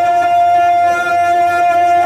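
Live devotional kalam performance over a sound system: one long, steady held note, following a wavering sung phrase.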